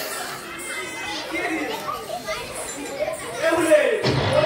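People talking, with children's voices among them; no music is playing.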